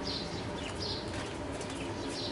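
Small birds chirping: a string of short, high chirps about two a second, over a steady background hum.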